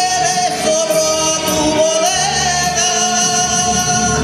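A man singing a copla, holding one long note that dips and rises slightly in pitch over instrumental accompaniment; the held note ends near the close, leaving the instruments alone.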